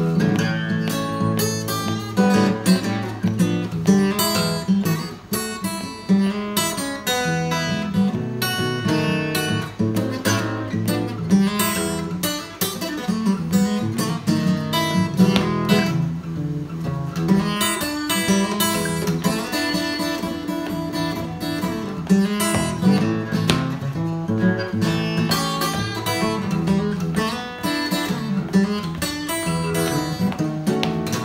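Solo acoustic guitar playing blues without singing, fingerpicked: a repeating bass figure under quicker picked treble notes.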